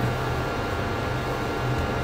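Steady low hum with an even hiss of room noise, with no clear event in it.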